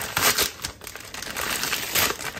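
Plastic zip-top freezer bag crinkling as frozen chicken breasts are shaken out of it into a slow-cooker crock, with a few sharp ticks.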